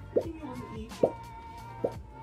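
Three loud wet plops, a little under a second apart, from a wooden maderotherapy tool worked in strokes over oiled skin, over background music.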